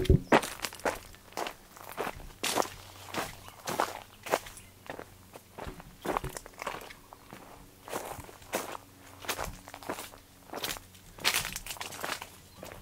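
Footsteps at a steady walking pace on a dry dirt path littered with leaves and fallen fruit, a step about every half to two-thirds of a second, each with a crackle of dry leaf litter.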